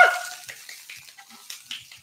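A man's excited shriek, rising then falling, dies away just after the start as the pancake is flipped; then a pancake frying faintly in the pan, with a few light clicks.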